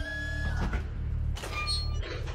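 Overhead steel mesh hatch of a cargo lift being hauled open: a couple of metallic clanks and a short metallic ring near the end, over a steady low rumble. A held music tone fades out about half a second in.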